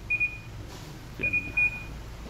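Control panel of a Panasonic NP-TM8 dishwasher beeping as its buttons are pressed to set the drying time and course. There are three short high beeps: one near the start, then two in quick succession a little past halfway.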